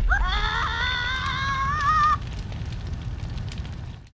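Logo sound effect: a low rumble with a high, wavering cry over it that rises at the start and lasts about two seconds; the rumble carries on and fades out at the end.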